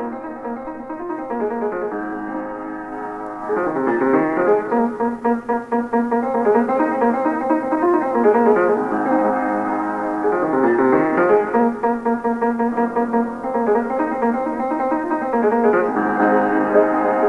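Piano playing an instrumental Ethiopian melody: held notes at first, then quick rippling runs of notes from about three and a half seconds in.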